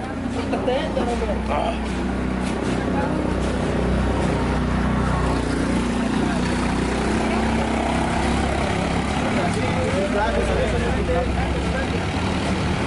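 A motor vehicle engine running steadily with an even low hum, under people talking close by.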